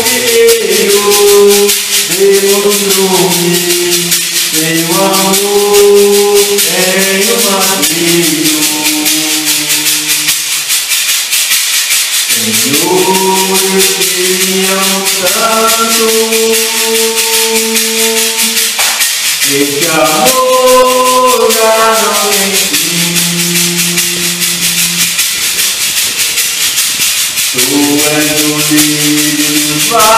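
Church worship music: a melody in long held notes over a fast, steady shaker rattle.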